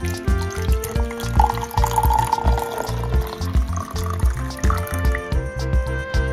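Background music with a steady beat, over water being poured into an open baby bottle for about four seconds.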